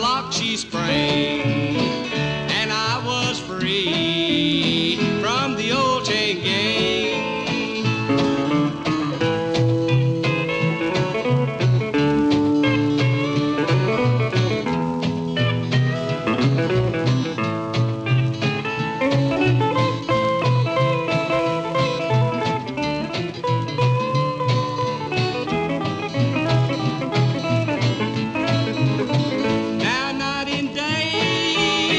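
Country string band playing an instrumental break with no singing: steady bass and rhythm under lead lines that slide in pitch during the first few seconds.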